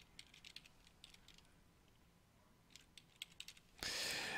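Faint computer keyboard typing: scattered quick key clicks in two short runs. A brief, louder hiss comes in near the end.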